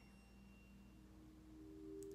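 Near silence with faint held tones, like a soft background music drone: a low tone gives way to two slightly higher ones about halfway through.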